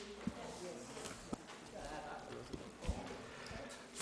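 Faint murmur of background voices in a large room, with a few scattered sharp knocks or taps, about four over the four seconds.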